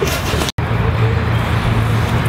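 Steady low rumble of background road traffic, cut off abruptly for a split second about half a second in and resuming with a steady low hum.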